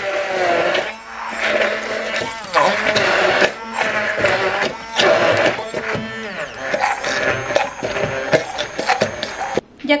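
Hand-held immersion blender running in a plastic beaker, pureeing mango chunks, in several bursts with short breaks between them.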